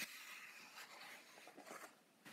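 Faint rustle of a paper page being turned in a coloring book, with the hand brushing across the paper.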